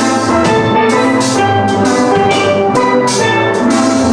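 Steel drum orchestra playing a song: many steelpans struck together in a rhythmic, ringing melody with chords.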